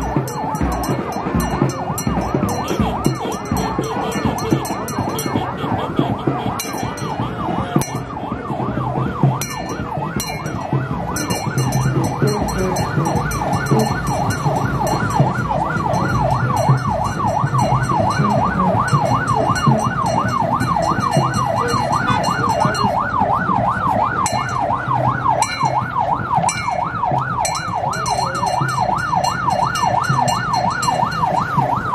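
Vehicle siren on a fast yelp, its pitch swinging up and down about four times a second and growing clearer and stronger from about a third of the way in, with scattered sharp clicks.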